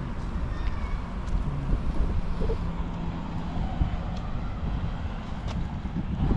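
Outdoor street ambience: wind buffeting the microphone as a low, uneven rumble, with the hum of road traffic running underneath.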